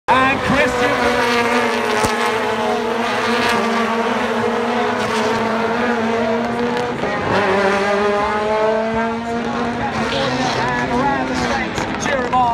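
Rallycross race cars running hard around the track: a continuous engine note that sags slightly, drops off at about seven seconds and then climbs again as the cars accelerate, with a few sharp pops along the way.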